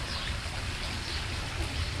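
Small tour boat underway on a canal: water washing along its hull close by, with a steady low rumble underneath.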